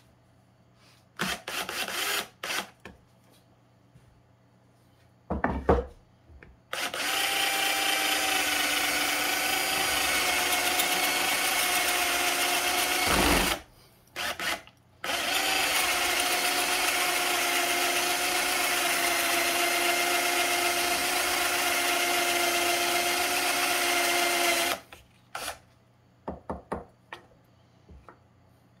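Power drill boring a spade bit through a block of red cedar: a few short bursts on the trigger, then two long steady runs of several seconds each with a steady motor whine, broken by a short pause about halfway, and a few brief bursts near the end.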